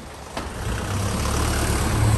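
A white van's engine running as the van drives slowly past right beside the microphone; the low rumble builds over the first second and then holds steady. A short click comes about half a second in.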